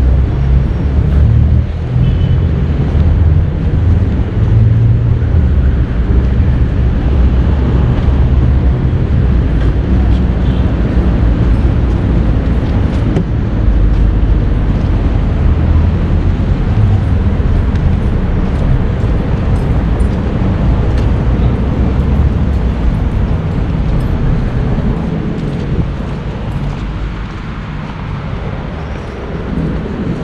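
Outdoor urban ambience: a loud, uneven low rumble of road traffic heard while walking, easing a little near the end.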